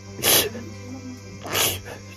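A man's two heavy, hissing breaths, about a second apart, over soft background music.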